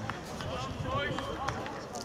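Indistinct voices of players and onlookers at a rugby match, none close to the microphone, with a few faint knocks.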